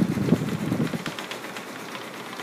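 Lhasa Apso growling low and rough for about a second, then fading to a faint rustle as it rolls on the plastic table.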